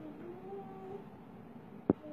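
A small child's faint, high, meow-like whine that wavers and rises in pitch, then a single sharp click near the end.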